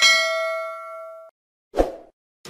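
Bell-like 'ding' sound effect of a subscribe-button animation: one ring that fades over about a second and then cuts off abruptly. A short, low thump follows near the end.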